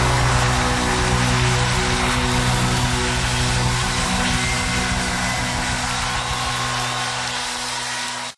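A rock worship band holds its closing chord and lets it ring out, a steady sustained chord under a dense wash of distorted guitar noise, slowly fading.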